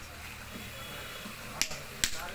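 A small hammer strikes a piece of red brick on a stone with a single sharp crack near the end.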